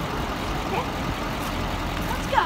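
Steady roadside vehicle noise, a constant rumble and hiss with no single event standing out.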